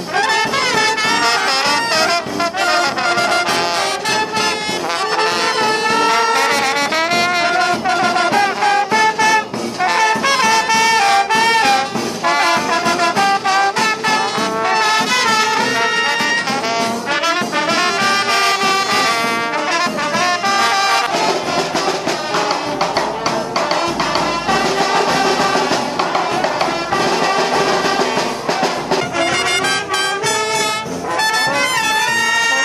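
A brass band plays a lively melody without pause, with trumpets and trombones to the fore. About two-thirds of the way through, the sound grows fuller and deeper.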